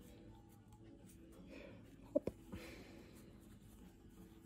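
Faint handling noise of fingers working a metal key-fob clamp onto a folded canvas strap, with one short spoken word about two seconds in.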